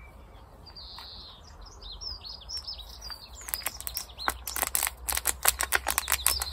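Small birds chirping, then from about three and a half seconds in a quick run of sharp crackles and clicks from a small plastic plant pot being handled and squeezed to free a tomato seedling.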